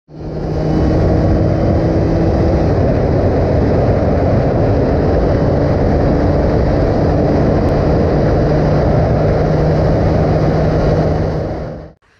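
Yamaha RX135 two-stroke single-cylinder motorcycle running steadily at high road speed, its engine note holding a constant pitch under heavy wind noise. The sound fades in at the start and fades out near the end.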